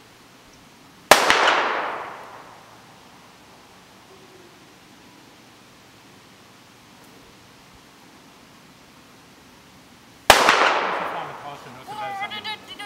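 Two gunshots about nine seconds apart, the first about a second in and the second near the end, each a sharp crack followed by a ringing echo that dies away over about a second. They are the shots of the gunfire-sensitivity test in a dog mental assessment.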